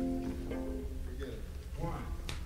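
A guitar chord rings out and fades during the first second of a studio take, followed by low voices near the end.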